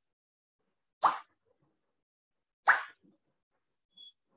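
Two short, sharp pops about one and a half seconds apart, each dying away quickly.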